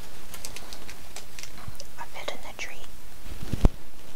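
Soft whispering with light clicks and rustles, and one sharp knock about three and a half seconds in.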